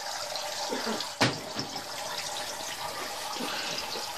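Water from a Turtle Clean 511 canister filter's spray bar splashing steadily into the tank water, with a single sharp knock about a second in.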